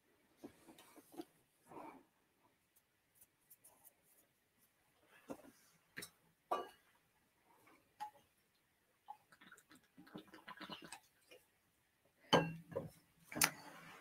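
Mostly quiet room with scattered faint clicks and small handling knocks; near the end, a few louder short sounds of a person sipping water.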